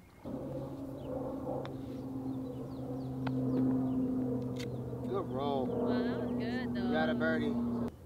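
A steady low hum like a distant motor, with voices talking faintly over it in the second half.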